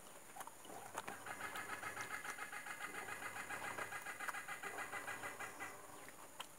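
Fingers pulling and handling sticky jackfruit bulbs, with a few soft clicks and tears. From about a second in, a loud, rapid, evenly repeating pulsing sound takes over and lasts about four and a half seconds.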